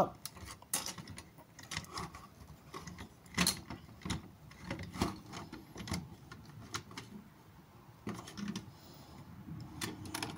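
Plastic parts of a transformable robot toy figure clicking and knocking irregularly as hands line up and press the body section's tab into its slot, with the sharpest knock about three and a half seconds in.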